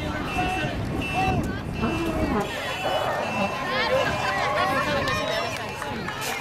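Several voices of a street crowd talking and calling out at once over a low rumble. A short high beep repeats about twice a second during the first two seconds.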